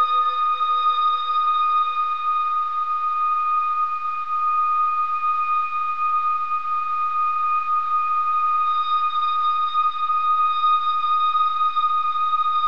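Experimental drone music: a single steady, high whistling tone held throughout over a soft hiss. A lower tone fades away in the first few seconds.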